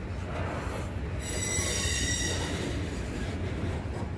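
Loaded freight train of ex-Soo Line and Canadian Pacific covered hopper cars rolling past, a steady rumble of wheels on rail. About a second in, the wheels give a high-pitched squeal that lasts about a second.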